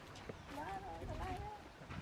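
A baby macaque making soft, high-pitched, wavering whimpering calls, starting about half a second in and lasting about a second.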